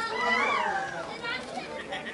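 Voices shouting and calling out at close range, with one long yell that rises and falls in the first second; no clear words.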